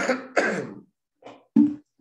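A man coughing: two coughs in quick succession, then a short cough or throat-clear about a second and a half in. He has a slight cold.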